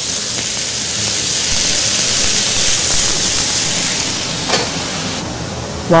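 Fresh wild mushrooms sizzling in butter in a hot sauté pan: a steady frying hiss that swells in the middle and eases off near the end, with one brief click about four and a half seconds in.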